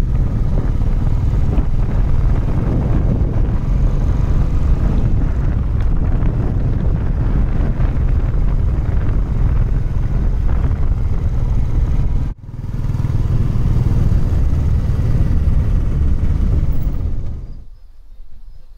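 Royal Enfield Classic 350 single-cylinder motorcycle engine running steadily while riding. There is a brief break a little past twelve seconds in, and it fades out just before the end.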